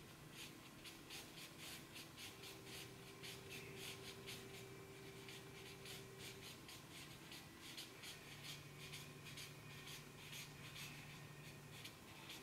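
Black felt-tip marker scratching on paper in quick, short strokes, about three or four a second, as feathers are sketched on a drawing. Faint.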